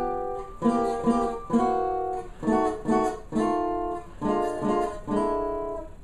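Tenor banjo (12-inch head, 17-fret custom OME) strumming a run of chords, some struck quickly in turn and some left to ring for about a second. The chords demonstrate a D7 moving to a D7 flat five.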